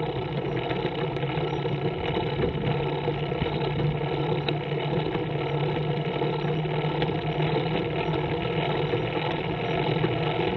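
Scorpion trike's engine running steadily at cruising speed, with road and wind noise over a constant low hum.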